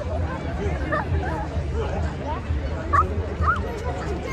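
Outdoor crowd chatter, many voices overlapping, with a few short, sharp high-pitched yelps about three seconds in. A low pulsing bass runs underneath.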